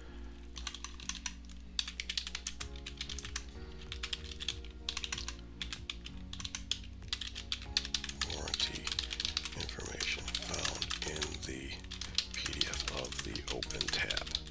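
Typing on a computer keyboard: a steady run of quick keystrokes over background music with held chords.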